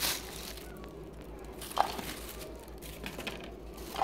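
Faint rustling of crumpled brown packing paper in a cardboard box as hands search through it, with one brief sharper crinkle a little under two seconds in.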